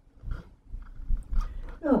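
A woman's pause in speech, with faint low rumbles and breath sounds, then she starts speaking again near the end with a drawn-out, falling "no".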